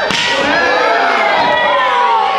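A sharp slap of a wrestling strike landing on bare skin, with spectators shouting and calling out in reaction right after it.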